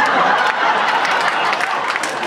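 Live audience laughing, with some clapping, a steady dense crowd noise.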